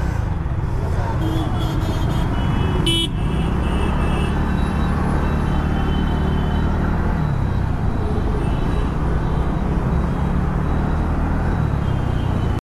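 City traffic as a TVS Ntorq 125 scooter pulls away from a stop and picks up speed, its single-cylinder engine humming under the road noise. Vehicle horns honk briefly about one to three seconds in.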